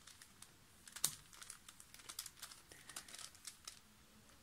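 Plastic Axis Megaminx puzzle being handled and turned, its pieces giving a run of faint clicks and rattles, the sharpest click about a second in.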